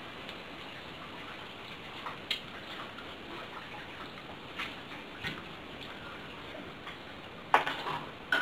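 Steady low hiss of a quiet room with a few faint scattered clicks. Near the end comes a sharp knock and a brief clatter, which is handling noise as a hand reaches for the camera.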